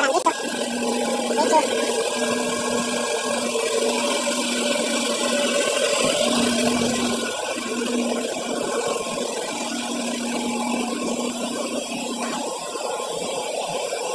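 Steady machinery noise inside a ship's machinery space, with a low hum that cuts in and out every second or so.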